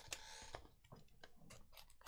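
Yellow utility knife slicing the seal on a cardboard card box: a brief scraping rasp just after the start, then several light clicks and taps as the blade and box are handled.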